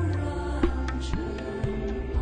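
Background music: slow sustained notes over a steady low drone, a new note sliding in about every half second.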